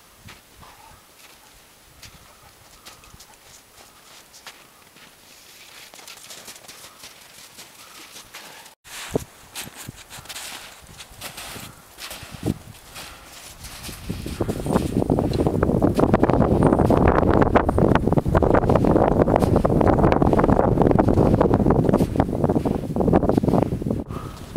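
Footsteps and forearm-crutch tips crunching on firm snow, as quiet irregular crunches and clicks. About halfway through, a loud steady wind rumble on the microphone comes in and buries them.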